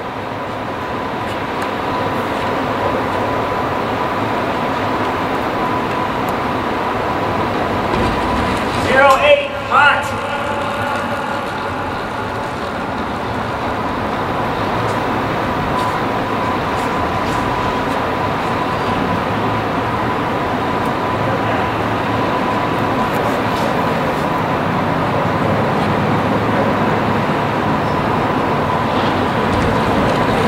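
Steady rushing background noise in a large hall, with a faint steady tone through it. A voice calls out briefly about nine seconds in.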